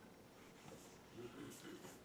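Near silence: quiet room tone with a few faint, soft sounds of a plastic water bottle being drunk from.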